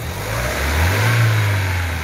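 Fiat Strada's four-cylinder engine given one throttle blip and released: the pitch rises for about a second, then falls back toward idle. It revs cleanly with no misfire, its oil-fouled MAP sensor just cleaned.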